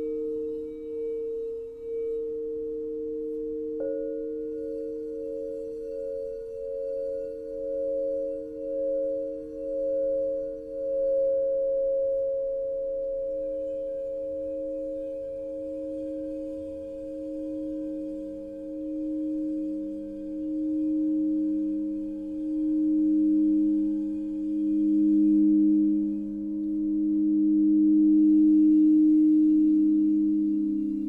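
Alchemy crystal singing bowls tuned to 432 Hz, sung by mallets circled around their rims: several sustained, overlapping tones that pulse as they beat against one another. A higher bowl joins about four seconds in and a lower one about seventeen seconds in, and the sound swells louder toward the end.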